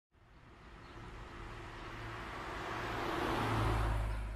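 Road traffic: a vehicle's engine and tyres grow steadily louder over a few seconds as it approaches, then begin to fade near the end.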